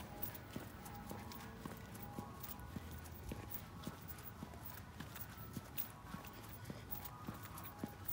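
Footsteps on a tarmac pavement, a walking pace of about two steps a second.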